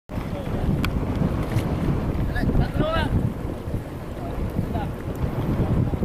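Wind buffeting the microphone with a heavy low rumble, over which distant voices call out a few times, most clearly about three seconds in.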